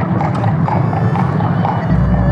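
Carriage horse's hooves clip-clopping at a steady walk on a paved road, about four hoofbeats a second. A low steady hum comes in near the end.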